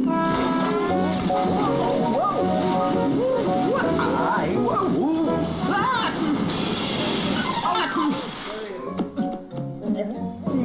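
Cartoon soundtrack: background music with wordless character cries and exclamations, and a splash sound effect about six and a half seconds in.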